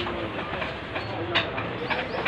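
Busy bazaar lane ambience: a steady rumble of passing engine traffic under a murmur of voices, with a couple of sharp clicks.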